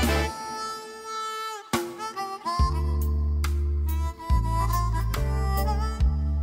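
Harmonica playing a melody over a backing with low bass notes, which join about two and a half seconds in.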